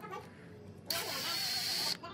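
Cordless drill-driver running for about a second, starting a little before halfway, driving a screw through a metal lathe faceplate into the end grain of a log; it is a steady whine that stops suddenly.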